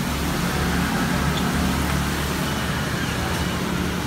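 Steady low rumble of a motor vehicle's engine in street traffic close by.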